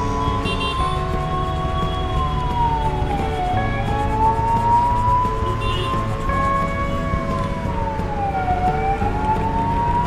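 Background music with held chords and a siren-like tone that slowly dips in pitch and rises again about every five seconds.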